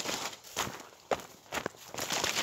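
Footsteps pushing through dense brush, leaves and branches rustling against the body, with a couple of sharp cracks about halfway through and shortly after.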